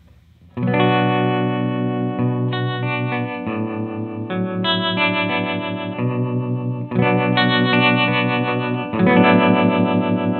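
Electric guitar chords played through a Source Audio Vertigo Tremolo pedal set to harmonic tremolo, the notes pulsing in a steady wobble. They start about half a second in, and the chord changes several times while the pedal's knobs are being turned.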